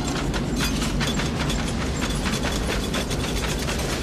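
Tornado sound effect from a movie trailer: a deep, steady rumble of wind with a fast rattling clatter of debris over it.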